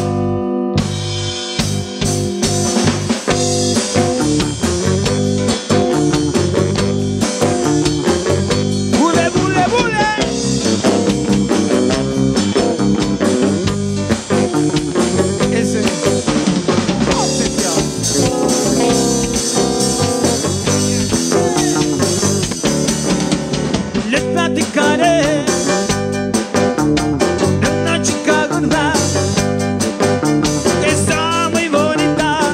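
Live band playing an upbeat rock and roll number on electric bass, drum kit and keyboards, kicking in right at the start after a count-in.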